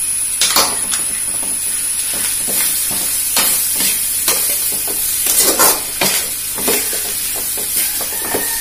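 Metal spatula stirring and scraping grated carrot and shredded vegetables in an aluminium kadai as they sauté over a steady sizzle. The spatula makes irregular scrapes and knocks against the pan, the loudest a little past the middle.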